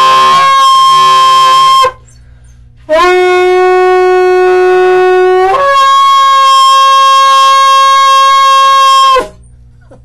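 Long curved shofar blown loudly in two blasts. The first, already sounding, ends about two seconds in. After a short pause the second starts on a low note, jumps up to a higher note about halfway through, and holds it until about a second before the end.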